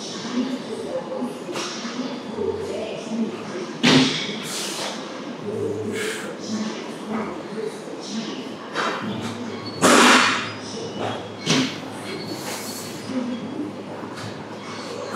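Indistinct background voices in a large, echoing room, broken by several short loud thuds; the two loudest come about four seconds and ten seconds in.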